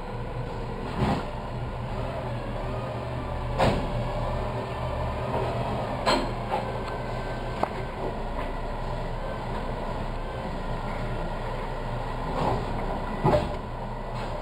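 Automated side-loader garbage truck idling steadily while its arm lifts a wheeled cart, empties it into the hopper and sets it down, with a series of sharp clanks and bangs a few seconds apart.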